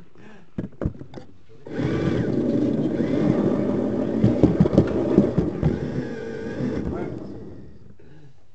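Model train motor car running along the track with the camera riding on it, its motor hum and wheel rolling noise carried loudly through the magnet mount, with many sharp clicks over rail joints and points. The noise starts about 2 s in and dies away near 7 s as the car comes to a stop.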